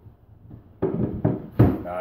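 A wooden shelf knocking against the wooden cleats it rests on as it is pushed into place. There are a few sharp knocks in the second half, the loudest about one and a half seconds in.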